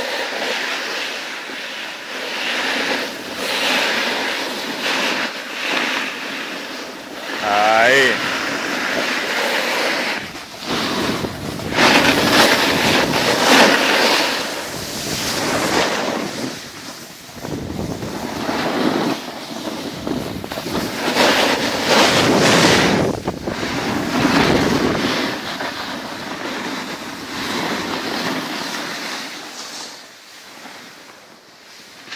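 Hissing, scraping rush of edges sliding over packed snow while moving downhill, mixed with wind on the microphone, swelling and fading every few seconds and loudest in the middle.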